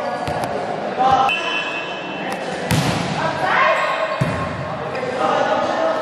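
A volleyball being struck several times in a rally, sharp slaps ringing in a large hall, with players shouting and calling between the hits.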